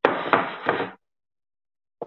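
A short burst of knocking and clatter, with two sharper knocks in it, lasting about a second and cutting off suddenly.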